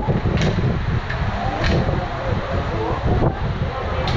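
Loud low rumbling noise with indistinct voices echoing in a stone tunnel. A few sharp metal clicks come from zipline trolleys and harness clips being handled on the cable.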